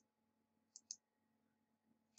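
A single computer mouse click, button press and release heard as two quick light ticks just under a second in, against near silence.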